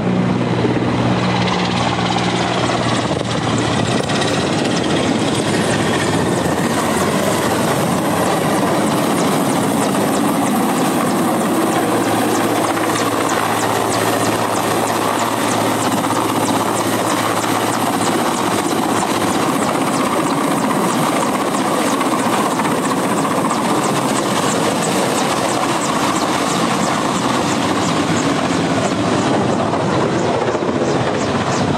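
Large twin-turbine helicopter of the Mi-8 type hovering low on a long line to fill its water bucket. Its rotor and turbines run loud and steady, with a rapid even beat of the blades. For the first few seconds a truck engine runs underneath.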